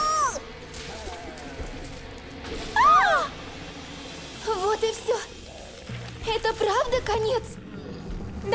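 Cartoon character voices: a few short wordless cries and squeaks from the animated girls and their small pet creatures, the first near the start and another about three seconds in, followed by choppy short vocal sounds. Background music plays under them.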